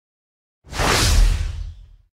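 Whoosh sound effect for an animated logo intro, with a deep low rumble under it. It starts suddenly a little over half a second in and fades out over about a second.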